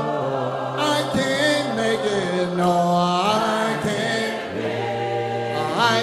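A cappella gospel singing: a male lead voice with a group of singers holding long, drawn-out chords, the pitch sliding up into new notes around the middle and near the end.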